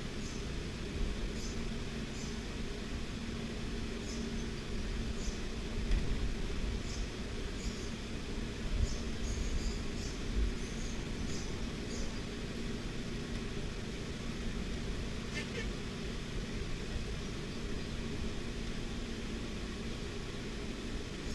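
Steady low background hum and rumble, with faint soft ticks scattered through the first half.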